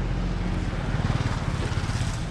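Small motorbike engine running as it passes close by, a steady low drone with a fast pulse.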